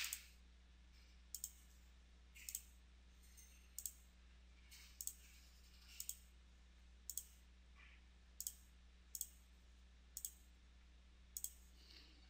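Faint computer mouse clicks, about a dozen spaced roughly a second apart, over a faint steady low hum.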